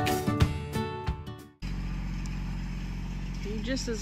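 Background music fades out, then after a sudden cut a Kubota L2501 tractor's diesel engine runs with a steady low hum; a woman starts speaking over it near the end.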